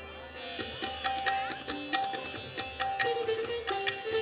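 Live Hindustani classical instrumental music on plucked strings: a melody of plucked notes with sliding pitch bends, over a steady drone.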